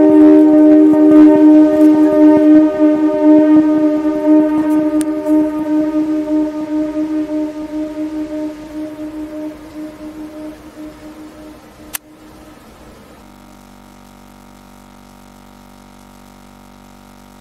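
A sustained droning tone made of several steady pitches, loud at first and slowly fading away over about twelve seconds. A sharp click comes near the end of the fade, followed by a faint steady hum.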